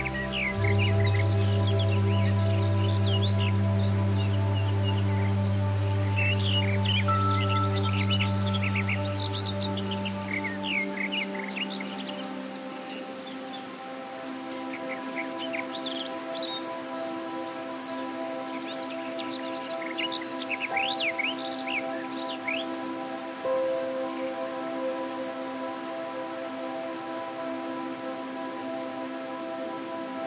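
Calm background music of long, sustained chords, with a low bass note that drops away about eleven seconds in. Bird chirps come and go over it for most of the first two thirds.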